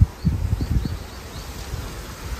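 Wind buffeting the phone microphone on an open rocky seashore, in irregular low rumbling gusts that are strongest in the first second, with a row of faint short high chirps over it.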